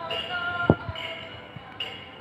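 Ringing chime tones, with a fresh strike about once a second and one sharp knock less than a second in.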